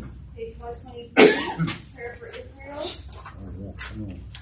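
A person coughs once, sharply, about a second in, with faint murmured voices around it.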